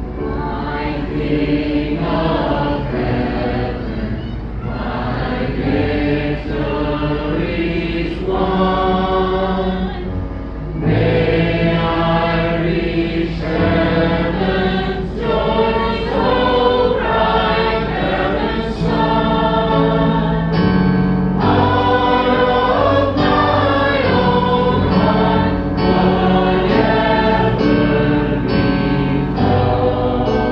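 A worship song sung live by a group of voices together, with electric keyboard accompaniment, amplified through a PA speaker.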